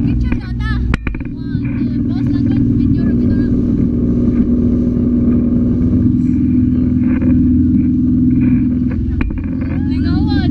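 Motorboat engine running steadily under way, a loud low hum, with voices and laughter over it during the first few seconds.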